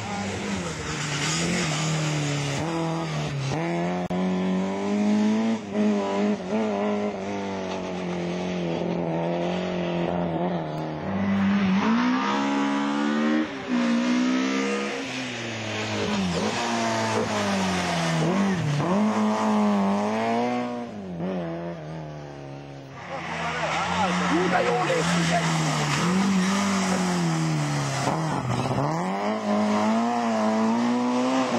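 Rally car engine revving hard at full throttle, its pitch climbing and dropping again and again as it shifts gears and lifts for corners. Partway through it fades briefly, then comes back loud.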